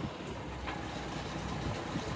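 Detroit Diesel truck engine running quietly, heard inside the cab as a steady low rumble. A faint steady tone joins it about two-thirds of a second in.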